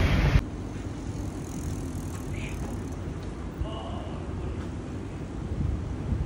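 City street ambience: a steady low rumble with a few faint, short distant sounds. It follows a loud burst of low noise that cuts off sharply just after the start.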